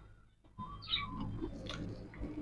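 A person chewing a crisp-crusted urad dal vada (minapa garelu), soft irregular crunching with a short crisp crunch near the end.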